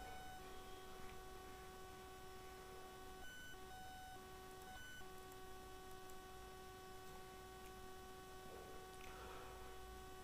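Near silence: room tone with a faint steady electrical hum made of a few high tones, which drop out briefly a few times in the middle.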